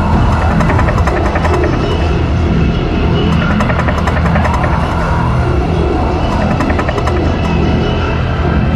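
Electronic music fusing psychedelic trance and drum 'n bass: dense, sustained bass tones under quick, ticking percussion that thins out after the first few seconds.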